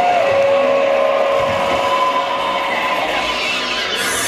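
Electronic synthesizer drone from a laptop live set: a held tone that slides down in pitch just after the start and then stays steady, with a fainter higher tone over a noisy wash.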